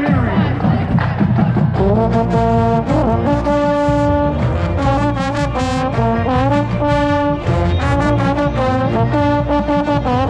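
Marching band brass playing, with a trombone right at the microphone: after a busy, sliding start, the band settles about two seconds in into loud, sustained chords with long held notes.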